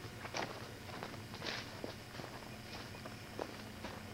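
Faint, irregular footsteps of a person walking: a handful of soft, uneven steps.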